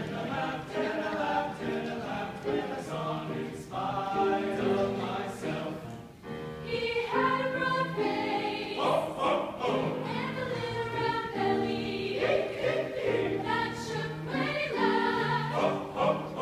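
A mixed choir of male and female voices singing, accompanied by a grand piano.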